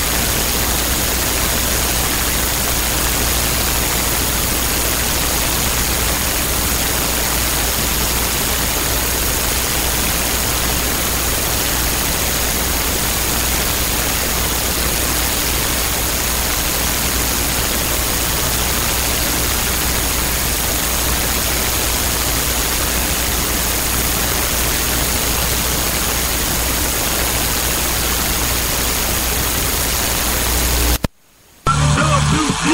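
Loud, steady static-like hiss with a low hum underneath and a faint high whine, unchanging throughout.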